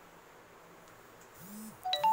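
A felt duster wiping a whiteboard, a faint dry rubbing at a low level. Near the end come a short hummed voice sound and a brief thin squeak.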